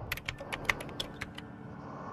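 A quick, irregular run of about ten sharp clicks in the first second and a half, like keys being typed, over a low steady rumble of idling motorcycle engines.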